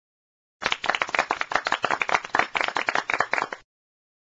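Rapid clapping, a quick run of sharp claps that starts abruptly about half a second in and cuts off suddenly about three seconds later.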